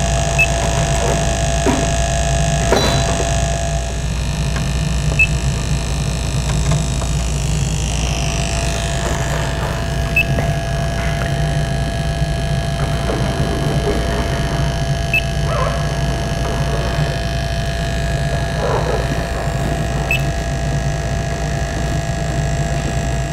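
Steady hum and whine of the CO2 leak detector's small sampling pump drawing air through its wand, with a faint short tick about every five seconds.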